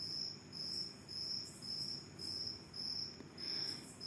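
Cricket chirping in a steady rhythm of short high-pitched pulses, about two a second.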